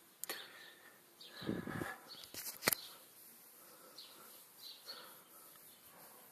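Faint outdoor background with a few brief sharp clicks and a short low rustle about a second and a half in.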